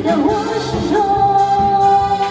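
A woman singing a pop ballad into a microphone over backing music, her voice wavering through a phrase and then holding one long note over the second half.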